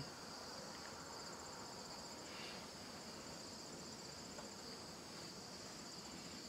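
Faint, steady high-pitched chirring of insects outdoors.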